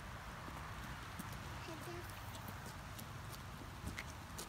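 A toddler's pink Hunter rubber rain boots tapping and scuffing on wet asphalt as she walks in short steps, over a steady hiss of light rain.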